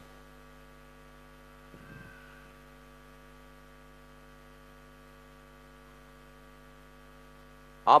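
Steady electrical mains hum with its evenly spaced overtones, carried through the church's sound system during a pause, with a faint brief murmur about two seconds in.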